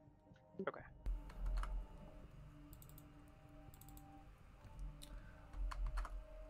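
Scattered clicks of a computer keyboard and mouse, a few single presses and short runs spread across several seconds, after a brief spoken "okay".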